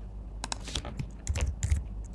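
Typing on a computer keyboard: an irregular run of key clicks that starts about half a second in.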